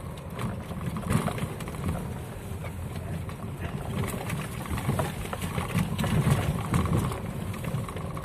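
Cabin noise of a Niva off-roader driving over a rough, rutted dirt track: low engine and drivetrain rumble with frequent knocks and rattles as the car jolts over the bumps.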